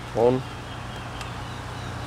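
A man's voice says one short word, then a steady low background hum with no distinct mechanical sound from the brake bleeding.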